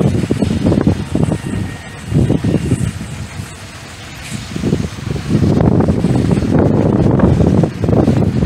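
Gusty wind rumbling on the microphone, easing off for a couple of seconds in the middle and picking up again, over a slow-moving train rolling past on the track.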